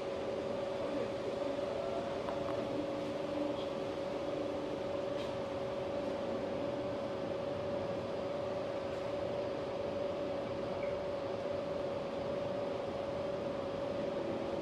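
Steady mechanical hum holding one constant tone over an even background hiss.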